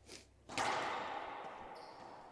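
Racquetball rally: a light knock, then about half a second in one loud, sharp hit of the ball that echoes and dies away in the enclosed court, followed near the end by short high squeaks of sneakers on the hardwood floor.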